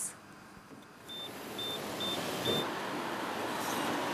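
Four short high-pitched beeps, about half a second apart, from a pay-and-display parking meter being used, over steady street and traffic noise.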